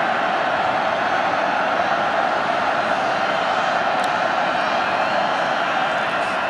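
Steady noise of a large stadium crowd at a college football game, holding at one level.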